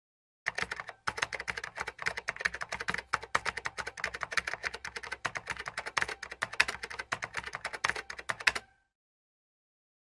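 Rapid computer-keyboard typing clicks, many a second, starting about half a second in with a short pause soon after and stopping about a second before the end. It is a typing sound effect for on-screen text being typed out.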